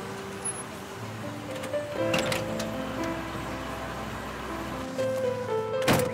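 Background music of held notes, with a sharp knock near the end from a car door shutting.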